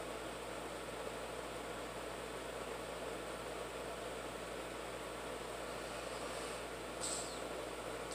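Steady background hiss with no music or speech, as in a quiet room recording, with a short high-pitched chirp near the end.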